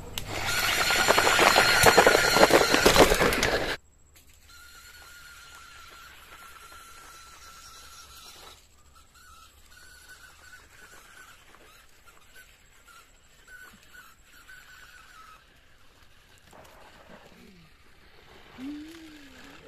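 Small DC gear motors of a homemade Arduino robot car whining as it drives over dirt carrying a tray, loud and harsh for the first few seconds, then cutting off suddenly. After that a much fainter high whine goes on, steady at first, then coming and going.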